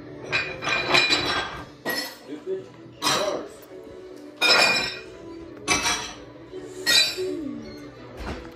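Tableware clinking about six times, roughly once every second and a bit, each clink ringing briefly.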